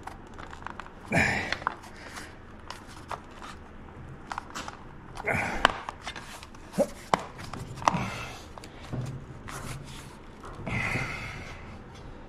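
Hands working plastic wiring-harness clips on a motorcycle frame, trying to snap one into place: scattered sharp clicks and a few short rustling bursts.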